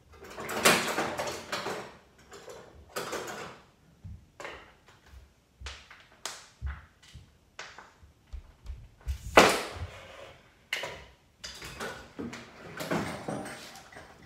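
Irregular scrapes, clicks and knocks of hand tools working on a small object, with two louder scraping rasps, one about a second in and one past the middle.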